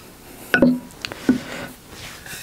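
A few short knocks and clicks as a metal propeller blade is handled against its hub. There are three small sounds about a second apart, the first the loudest.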